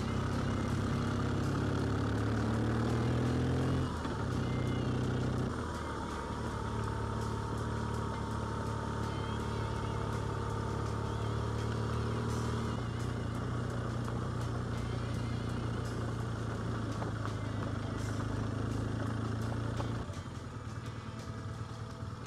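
Motorcycle engine heard from on board while riding, a steady low note that changes pitch twice a few seconds in, then drops to a quieter idle near the end as the bike comes to a stop.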